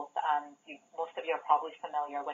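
Speech only: a person talking without pause, with the narrow, thin sound of a telephone line.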